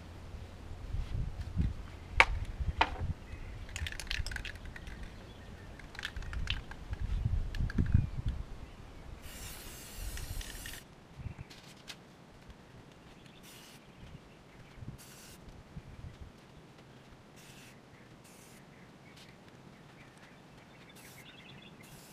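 Aerosol spray paint can (Rust-Oleum 2X) hissing in short bursts: one longer spray of over a second just before halfway, then a run of brief puffs. A low rumble runs under the first half.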